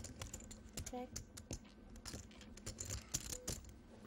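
Clay poker chips clicking irregularly as players handle and riffle their stacks at the table, a rapid scatter of small sharp clicks.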